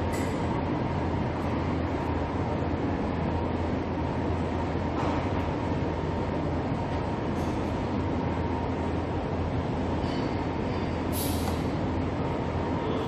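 Steady low hum and rumble of room noise with a faint steady whine, no rhythm to it; a brief sharp scrape near the end.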